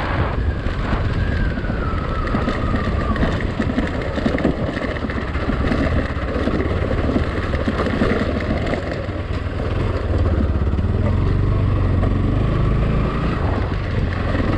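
Motorcycle engine running while the bike rides a rough dirt and gravel track. A thin whine falls in pitch over the first few seconds, and the low engine sound grows louder about ten seconds in.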